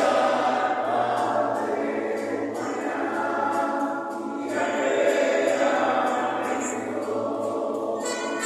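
A choir singing sustained phrases, with a short break about four seconds in.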